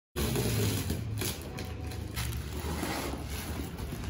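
Black plastic wrapping on a cardboard parcel rustling and crinkling as it is handled, with a few sharper crackles and a steady low hum underneath.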